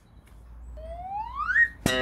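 Edited-in cartoon sound effect: a rising whistle glide lasting about a second, then a sudden twangy plucked-string note that holds with a slight wobble.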